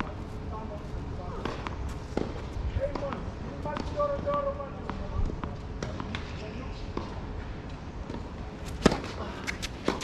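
A tennis ball being bounced on a hard court ahead of a serve: a few sharp, separate thuds, the loudest about nine seconds in and another near the end. Faint voices are heard in the background.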